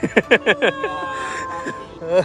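People's voices: a quick run of short, falling cries like laughter in the first second, then one long held high note.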